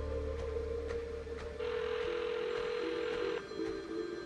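Background music score of held, slowly shifting tones, with a rushing hiss that comes in about a second and a half in and cuts off abruptly near the end.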